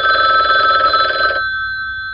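Telephone bell ringing: a single ring that stops about one and a half seconds in, its bell tones fading away afterwards.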